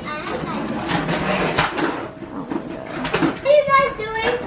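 Indistinct, overlapping voices with a scatter of short clicks and rustles, and a brief spoken word about three and a half seconds in.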